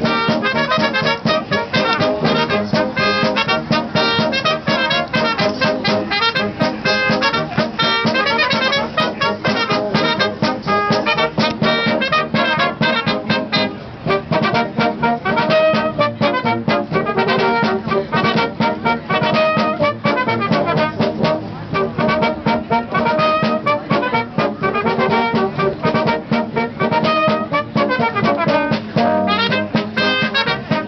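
A small brass band of cornets, alto horns and tubas playing a tune together in harmony, with the tubas carrying a steady bass line beneath.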